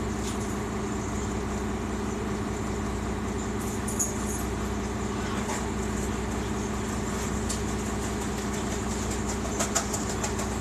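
Engine of a 2001 New Flyer D40LF transit bus, a Cummins Westport ISC-280, running steadily as heard inside the passenger cabin. A short click about four seconds in and another near the end.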